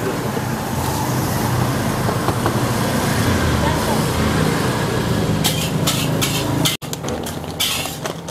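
Brown wrapping paper crinkling in short rustles as it is folded around portions of fried rice, mostly in the last few seconds. Underneath, a steady low engine-like rumble and background voices.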